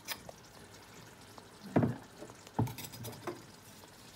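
Pounded soumbara mixture being tipped and pressed into a pot of cooked rice: light clicks and scraping of kitchen utensils against the pot, with two soft thumps a little under two seconds in and about two and a half seconds in.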